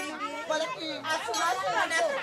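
Several people talking at once: overlapping, unclear chatter.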